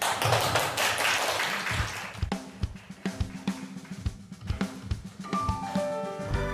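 Intro of a pop-style worship song played from a backing track: a noisy wash over the first two seconds, then a drum-kit beat of kick and snare with sustained pitched chords coming in, and higher notes joining near the end.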